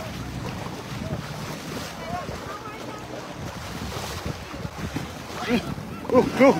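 Wind buffeting the microphone over the wash of moving floodwater, with faint voices and voices growing louder near the end.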